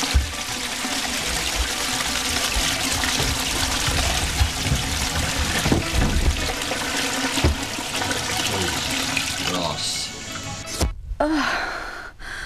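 A toilet flushing: a long, steady rush of water with a couple of sharp thuds. It cuts off shortly before the end and is followed by a woman's gasp.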